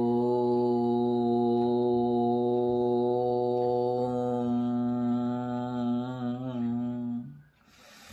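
A man chanting a long, drawn-out "Om" on a single held note, humming on one breath as a pranayama breathing practice; the note wavers slightly and stops about seven seconds in.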